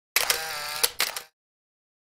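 A short camera-shutter sound effect: a click, a whirr of about half a second, then two more sharp clicks.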